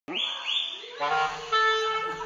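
Clarinet playing a short phrase of held notes, answered near the start by two quick swooping whistled calls from a white-crested laughing thrush.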